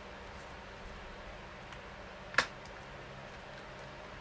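A single sharp click of a small hard object about two and a half seconds in, against a faint steady room hum.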